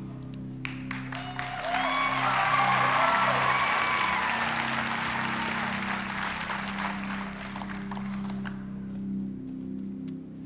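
A studio audience applauding and cheering, with a few whoops. It swells about a second and a half in and dies away near the end, over low, held music chords from the game show's score.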